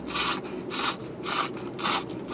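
A person slurping udon noodles from chopsticks in four short, hissing sucks, about two a second.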